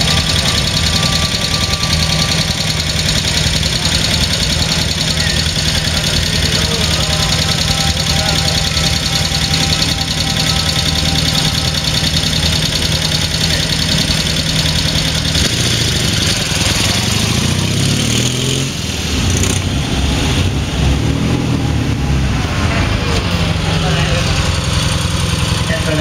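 Dnepr sidecar motorcycle's BMW-derived flat-twin engine idling steadily, then its revs rising and falling from about sixteen seconds in.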